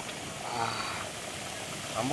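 Steady hiss of an open wood fire roasting bamboo tubes of coconut-milk sticky rice, with a faint voice briefly about half a second in.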